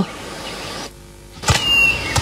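Cartoon sound effects: a faint hiss, then a sudden thud about one and a half seconds in, followed by a short high squeak that slides slightly down in pitch.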